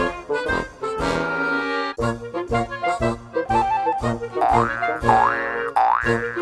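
Bouncy, playful background music with a steady beat and pitched melody notes, joined in the second half by quick sliding 'boing' sounds that sweep up and down in pitch.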